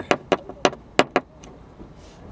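Light taps of a thin pin on windshield glass, about six quick sharp clicks in the first second or so. The stone chip is being tapped so that it connects to the drilled hole for resin repair.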